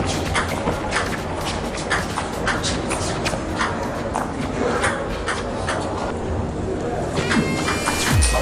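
Table tennis rally: the celluloid ball clicks in quick succession off bats and table over the hum of the hall. Electronic music comes in near the end.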